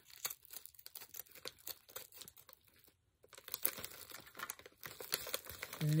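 Plastic packaging crinkling and crackling as it is cut open with scissors and handled, in a quiet run of small crackles that stops briefly about halfway and grows busier afterwards.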